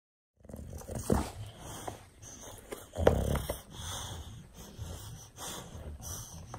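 English bulldog tugging on a ball toy held in its jaws, making dog noises and breathing sounds. The sounds start about half a second in, with louder bursts about a second in and around three seconds in.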